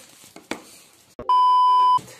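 Steady electronic beep, a single tone near 1 kHz, lasting about two-thirds of a second and cutting off abruptly; it follows a moment of dead silence, like a bleep added in editing.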